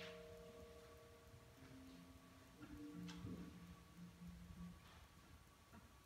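School wind band playing very softly: a few quiet held low notes linger and fade, barely above near silence. Faint clicks come near the start, at about three seconds and at about five seconds.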